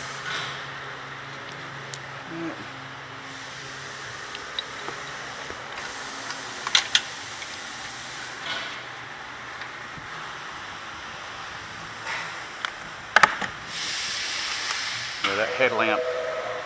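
Hands fitting plastic clips and a skid plate under a car: a few sharp clicks and knocks over a steady low hum, with a short burst of hiss near the end.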